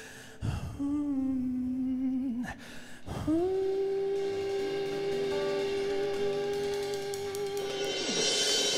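Live band music with a male singer holding sustained notes into a microphone: a shorter steady note about a second in, then one long, unwavering held note from about three seconds in, with drums and cymbals underneath.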